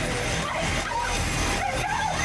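Film soundtrack: a steady mechanical grinding of chains being winched in, dragging the trapped victims along the floor.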